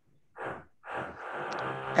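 A man's short breath, then a drawn-out, steady hesitant "hmm" or "uhh" lasting about a second, leading into his reply.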